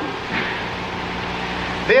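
Steady hiss with a low hum from an old lecture-hall recording, heard in a pause between sentences.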